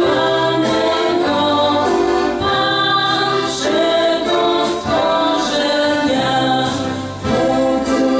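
Two female voices singing a slow song together in harmony, holding notes over a low sustained accompaniment.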